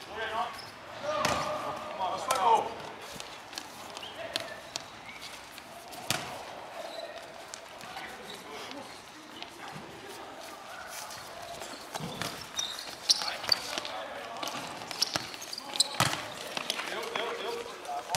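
Futsal ball being kicked and bouncing on a hard court floor: sharp knocks every few seconds, with players' voices around them.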